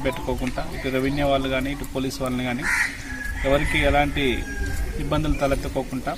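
A man speaking Telugu into a microphone, with a bird calling in the background.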